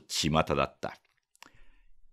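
A man's voice reading aloud in Japanese, which stops less than a second in. A pause follows, with faint clicks and a soft hiss of mouth noise.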